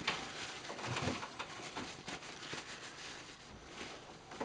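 A cloth rubbing and rustling over a small cocobolo box held in a lathe chuck, in soft, irregular scrapes and light handling knocks.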